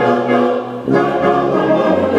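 Brass band of cornets, euphoniums and tubas playing slow, sustained hymn-like chords, with a new chord swelling in about a second in.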